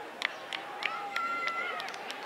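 Distant voices shouting, with one long held shout near the middle, over a run of sharp clicks about three a second.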